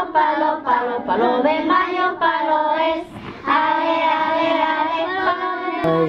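A group of young children singing a song together, holding steady notes in phrases, with a brief break about three seconds in.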